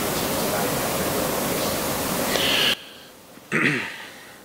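A steady, loud hiss with a faint, distant voice under it, like an off-mic question in a room, cutting off abruptly about three-quarters of the way through. A man then clears his throat once near the end.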